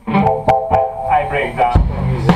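Electric guitar through an effects unit, played in a few short bursts of notes and chords with sharp knocks among them; a strong low note comes in near the end.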